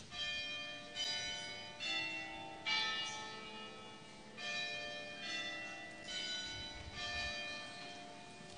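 Church bells ringing a slow tune, one note struck about every second at changing pitches. Each note rings on under the next, with a short pause in the middle.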